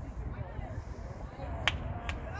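Faint shouts of players and spectators across an outdoor playing field over a low rumble, with one sharp smack near the end.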